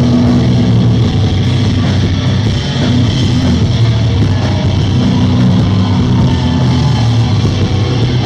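Live metal band playing loud, with distorted electric guitars and bass holding heavy low notes.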